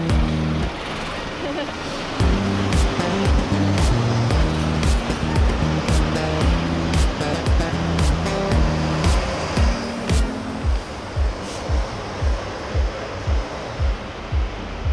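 Background pop music with a steady beat, its bass pulsing about twice a second.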